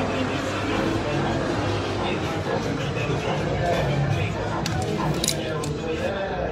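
Indistinct voices talking in the background, with a few short clicks near the end.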